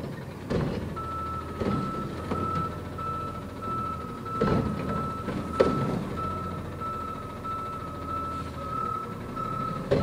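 Garbage truck's reversing alarm beeping steadily over its running engine, with several clanks and thuds, the loudest about five and a half seconds in.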